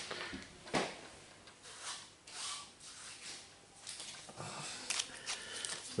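Plastic wrapper of a trading-card multipack rustling and crinkling in short bursts as it is opened by hand and the packs pulled out, with one sharp click about a second in.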